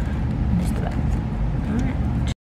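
A steady low rumble of background noise, with a few light clicks and crinkles of a plastic photocard sleeve being handled and a couple of faint murmured words.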